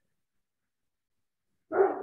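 Near silence, then a dog barks near the end.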